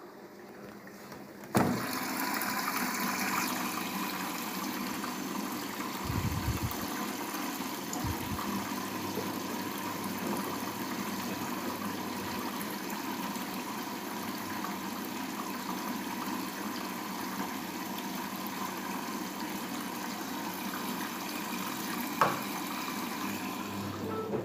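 Daewoo DWD-FT1013 front-loading washing machine starting its fill: the water inlet valve clicks open about a second and a half in, and water then rushes steadily into the machine through the detergent dispenser drawer. A sharp click comes near the end.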